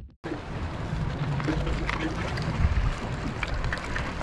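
Steady wind buffeting the microphone over the wash of the sea, with a few faint clicks.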